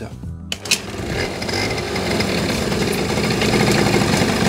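Two-stroke 50 cc scooter engine starting about half a second in and settling into a steady, high idle. The idle screw is turned up and the mixture screw is fully screwed in, so it runs on a very rich mixture.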